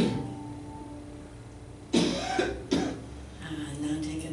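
A last piano note is struck and rings on, then a person coughs twice, about two seconds in, the coughs well under a second apart.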